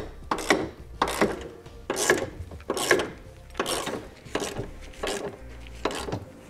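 Hand socket ratchet clicking as it tightens bolts, in repeated strokes about every three-quarters of a second.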